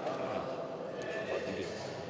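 Faint, indistinct murmur of voices and room noise in a large hall, with no clear words.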